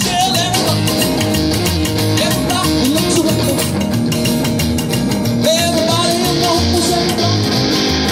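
A live rock and roll band playing: electric guitar and acoustic guitar over an upright double bass, with a steady pulsing low end.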